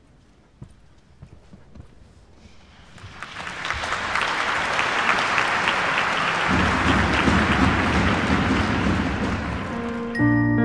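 Audience applauding. The clapping starts faintly about three seconds in and swells to steady, full applause, with a low rumble underneath from just past the middle.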